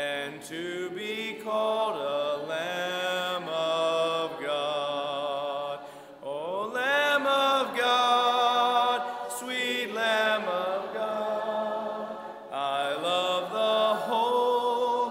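A church congregation singing a hymn together a cappella, men's and women's voices without instruments, in slow, long-held phrases with a scoop up in pitch about halfway through.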